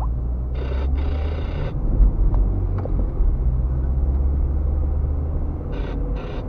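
Low rumble of a car's engine and tyres on the road, heard inside the car's cabin while driving. Two short bursts of a higher hiss come in about half a second in and near the end.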